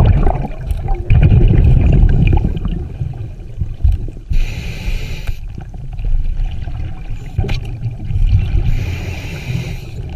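Scuba diver breathing underwater through a regulator: exhaled bubbles gurgle in loud, low rumbling bursts, and the inhale hisses twice, about four seconds in and again near the end.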